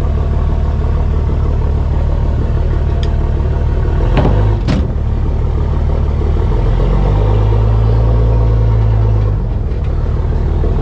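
Pickup truck engine running low and steady, then working harder for about two seconds from around seven seconds in as it takes up a tow strap to pull a compact tractor stuck in mud. Two sharp clanks a little after four seconds in.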